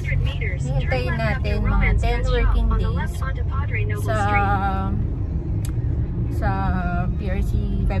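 A woman talking, over the steady low rumble of a car cabin on the move.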